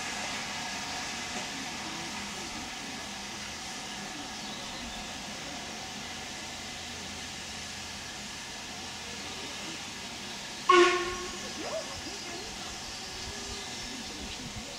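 Stanier 8F 2-8-0 steam locomotive standing with a steady hiss of escaping steam. Late on comes one short, loud toot of its whistle, which dies away within a second.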